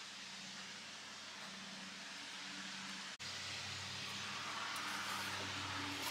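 A steady low mechanical hum under a soft hiss, with a brief dropout about three seconds in.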